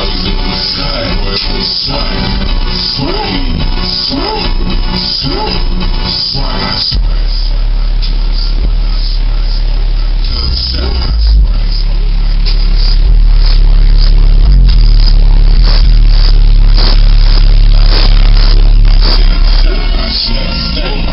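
Music played loud on a truck's car-audio system, heard from outside the truck: a song with vocals for the first seven seconds or so, then a deep, sustained bass that grows louder around the middle and holds.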